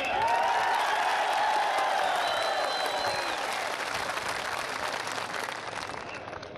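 Large crowd applauding, with voices calling out over the clapping for roughly the first three seconds; the applause dies down toward the end.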